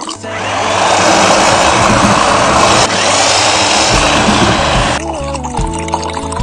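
Electric countertop blender running at full speed, a loud steady whir as it purees fruit, vegetables and milk tea into a drink. It cuts off about five seconds in, leaving background music.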